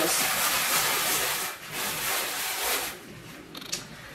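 A sponge scrubbing the burnt-on carbon crust of a metal baking tray, smeared with foamy cleaner, in a steady rasping rub. It breaks off briefly partway through, then continues for about three seconds and turns much quieter near the end.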